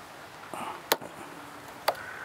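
Click-type torque wrench clicking twice, about a second apart, as it is pulled on a bolt held in a vise. Each click is taken for the wrench tripping at its 80 foot-pound setting.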